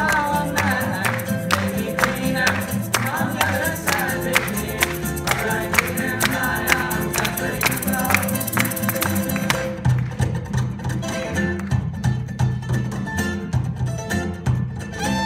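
Acoustic string band playing an instrumental passage of a soul cover: acoustic guitar strumming a steady rhythm over upright bass. About ten seconds in the bright strumming stops, leaving mainly the bass.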